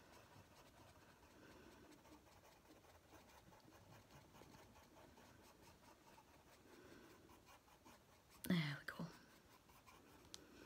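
Faint scratching of a Prismacolor coloured pencil on paper, worked in tiny circles (scumbling) with firm pressure.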